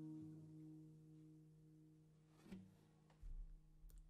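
A final strummed chord on an acoustic guitar ringing out and fading to a faint level, with a small click about two and a half seconds in and a soft low thump near the end.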